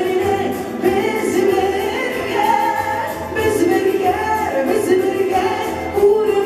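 A woman singing a Tatar song into a microphone, holding long wavering notes over amplified backing music with a steady low beat.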